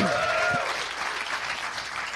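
Audience applauding, dying down gradually, with a brief voice-like call at the start.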